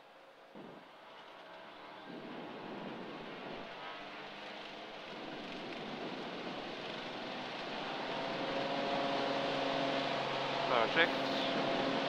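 Single-engine light aircraft's piston engine and propeller at takeoff power during the takeoff roll on a dirt strip, growing steadily louder. A steady engine tone comes through more clearly in the second half.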